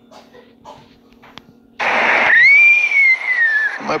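A faint low hum, then about two seconds in a sudden loud rush of noise carrying a high whistling tone that rises briefly and then slides slowly down for about two seconds before cutting off.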